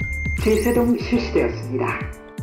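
Background music with a steady bass line under a recorded voice prompt from a Laerdal AED trainer, announcing that the shock has been delivered.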